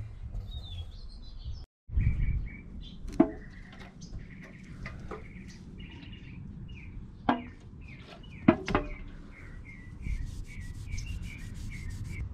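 Cloth rag rubbing and wiping along a 3/4-inch steel pipe as it is cleaned with acetone, with a few sharp knocks. Small birds chirp in the background.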